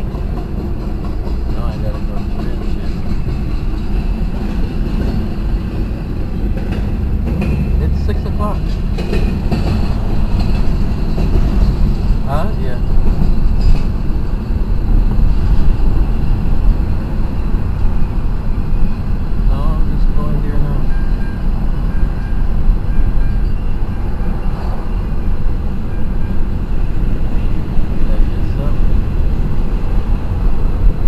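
Road and wind noise inside a moving car, growing louder as it speeds up, mixed with the rumble of a freight train running alongside.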